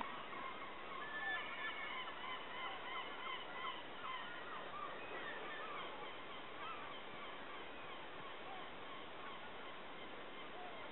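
A flock of seabirds calling: many short honking calls overlapping one another throughout, faint over a steady background hiss.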